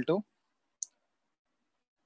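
A single short, sharp click a little under a second in, set in otherwise near silence.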